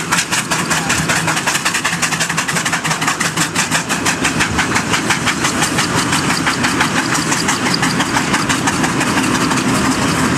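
Two steam road locomotives working in tandem under load, hauling a heavy timber trailer, their exhausts beating in rapid, even chuffs, several a second.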